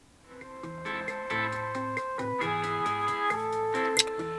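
Music played through a JVC loudspeaker box from an MP3 player, fed through a home-built one-transistor active filter and amplifier. It starts a fraction of a second in and swells up over the first second into held notes over a bass line, at quite a high level for a living room.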